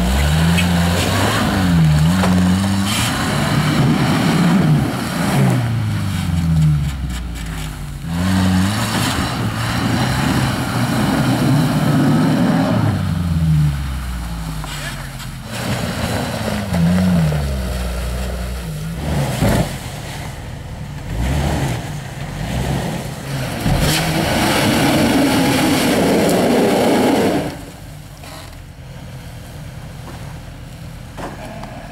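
Suzuki Samurai's four-cylinder engine revving up and down again and again under load as it climbs a snowy off-road slope. The engine sound drops off sharply near the end.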